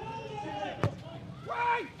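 A football kicked once, a single sharp thud just under a second in, as a cross is struck from the wing, with faint voices calling on the pitch before and after it.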